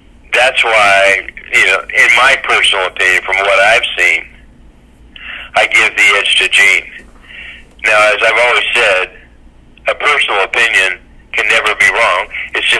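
Speech only: a person talking in short phrases with brief pauses. The voice sounds thin and narrow, like a telephone line.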